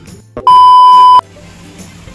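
A loud, steady electronic beep tone lasting under a second, starting about half a second in and cutting off suddenly, just after a brief click.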